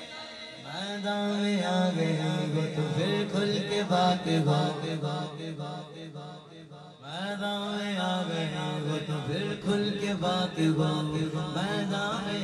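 Male naat reciter singing a devotional manqabat into a microphone in long melodic phrases, over a steady low held drone. The singing breaks off briefly about six seconds in and starts again a second later.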